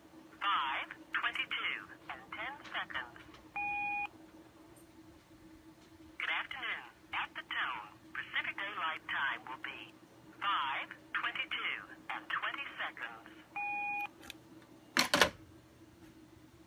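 A recorded time-of-day announcement on a telephone line, heard through the handset of a Model 500 rotary phone: a recorded voice reads out Pacific Daylight time, with a short beep at the tone about 4 seconds in and again ten seconds later. About 15 seconds in, the handset is hung up on the cradle with one loud clack.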